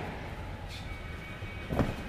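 Steady low outdoor rumble, with one short thud near the end.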